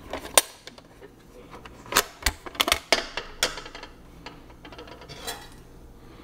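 Thin stainless steel panels of a flat-pack mini grill clinking and clicking against each other as they are unfolded and slotted together by hand: a string of sharp metallic clicks, bunched between about two and three and a half seconds in, with one more near the end.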